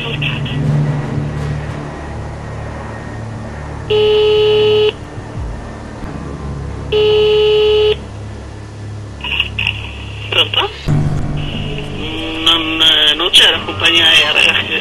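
Telephone ringing tone heard down a recorded phone line: two one-second beeps of one steady pitch, about three seconds apart, over a low line hum. A voice comes on the line near the end.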